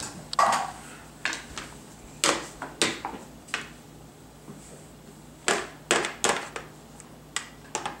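A toy drum set's plastic pads tapped with a drumstick: about ten light, irregular knocks.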